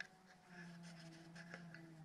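Near silence: room tone with a faint steady low hum and a light click at the very start.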